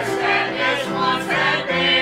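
A small church choir of men's and women's voices singing together in harmony, in held notes.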